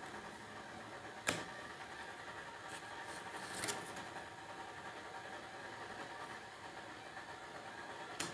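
Tarot cards being laid out on a desk: a sharp tap about a second in and a soft swish a little past the middle, over a faint steady room hum.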